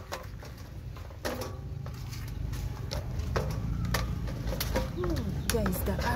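Wooden pestle pounding green peppers, garlic and onion in a plastic bowl: a handful of irregular, dull knocks a second or more apart.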